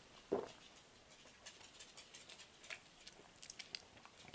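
Quiet drinking from an aluminium soft-drink can: a single swallow about a third of a second in, followed by faint scattered clicks.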